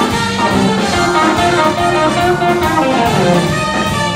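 Live blues band playing an instrumental passage: trumpet and saxophone horn lines over drums, electric bass and keyboards.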